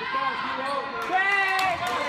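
Gymnasium game sound during girls' basketball: voices of players and spectators calling out, with a few high, held calls about a second in. Over them come sharp knocks and clicks of the ball and shoes on the hardwood court.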